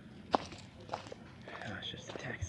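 Footsteps of a person walking outdoors on a path, a string of short steps with one sharper knock about a third of a second in.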